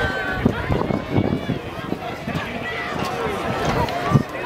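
Indistinct talk of several people outdoors, voices overlapping with no clear words, with a few brief knocks.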